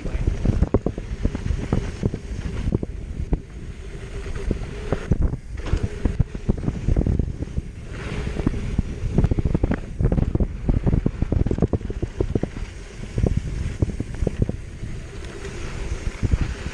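Esker Hayduke hardtail mountain bike descending a rough dirt trail: tyres rolling over dirt and bumps with constant quick rattles and knocks from the bike, over wind rumbling on the microphone.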